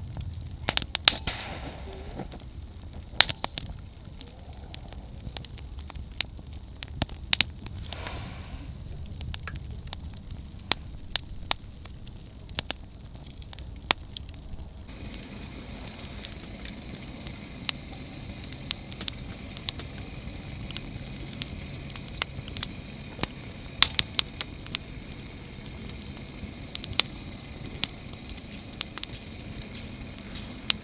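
Wood fire crackling, with sharp pops at irregular intervals over a low rumble of flames. About halfway through, the background changes to a steadier hiss.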